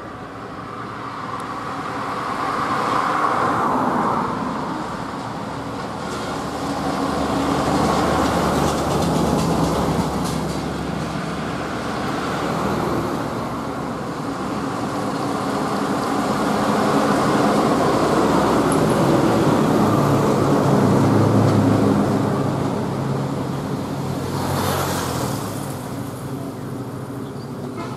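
Highway traffic: buses and trucks passing one after another, engine and tyre noise swelling and fading in several waves. A deep engine note is loudest in the last few seconds as a heavy vehicle goes by.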